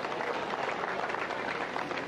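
Spectators applauding a holed birdie putt, a steady patter of clapping that eases off slightly.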